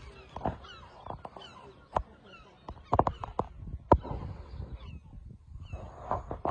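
Outdoor birds chirping repeatedly in short calls, with a few sharp clicks or knocks about two, three and four seconds in over a low rumble.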